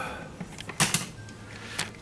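Two short rustling noises, one about a second in and a smaller one near the end, from handling of a handheld camera and clothing as the person moves, over quiet room tone.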